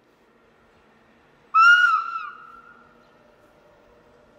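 Horn of an approaching Matterhorn Gotthard Bahn train: one short, loud, high blast about a second and a half in, with a slight dip in pitch, trailing off over the next second.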